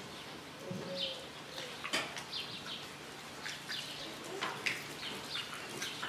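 Quiet outdoor pause with scattered short bird chirps and a few faint clicks.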